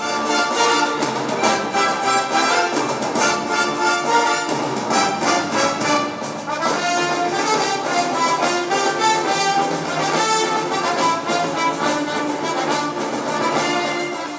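Symphony orchestra playing Hollywood film music, with the brass prominent over a steady rhythmic pulse.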